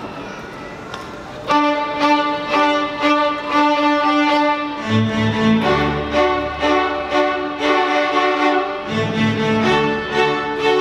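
A school string orchestra starts playing together about a second and a half in, violins carrying sustained repeated notes. Cellos and double basses join with low notes about five seconds in.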